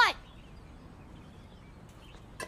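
A short, sharp exclaimed "What?" at the very start, then only a faint, steady background hush for the rest.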